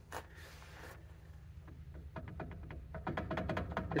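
Rear axle flange of a 1965 Ford Thunderbird being rocked by hand, giving a run of faint quick clicks from about halfway in: the play of a tired rear wheel bearing that is a little loose.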